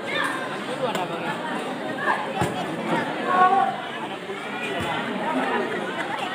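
A crowd of spectators chattering, many voices overlapping, with three faint sharp knocks.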